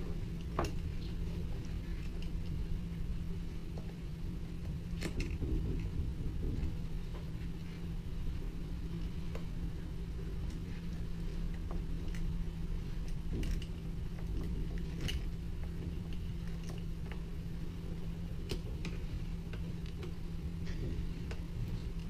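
Scattered small clicks and taps of a screwdriver and a metal DB9 serial plug being screwed into a laptop's COM port, a few seconds apart, over a steady low hum.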